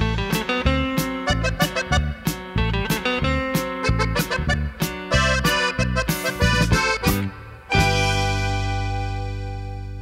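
Instrumental ending of a Mexican grupera song, with an accordion over a rhythmic band. About three-quarters of the way through it stops on a final held chord that rings and slowly fades.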